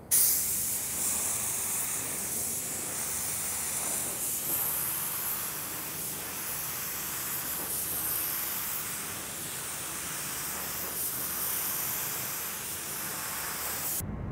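Gravity-feed spray gun hissing steadily as it sprays primer onto a car fender, with the compressed air flowing through it without a break.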